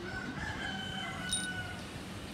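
A rooster crowing: one long held call lasting about a second and a half, fairly faint under the room of the recording.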